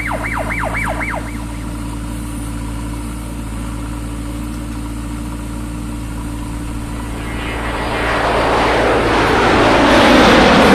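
JCB 3DX backhoe loader's diesel engine running steadily. Over it, a fast electronic warble of about four sweeps a second cuts off about a second in. Near the end a broad rush of noise builds as the backhoe works and soil spills from the raised bucket.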